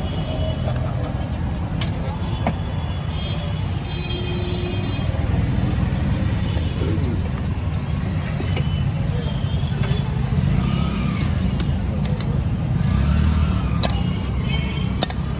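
Busy street ambience: traffic rumbling steadily, with background voices and a few sharp clinks of steel utensils.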